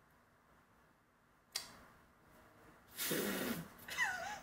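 A woman's short laugh near the end, after a single sharp click about a second and a half in; otherwise quiet room tone.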